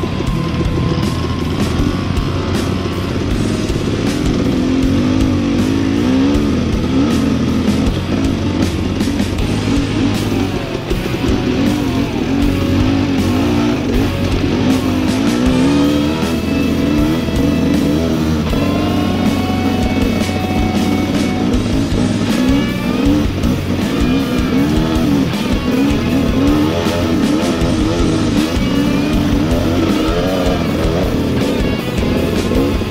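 Dirt bike engine revving up and down as the bike climbs a rough trail, its pitch rising and falling continually with the throttle.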